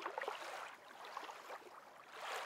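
Water lapping and splashing, with small gurgles and drips, rising and falling in gentle swells.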